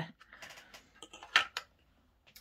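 Faint, light clicks and taps of small objects being handled, with a short hiss about one and a half seconds in.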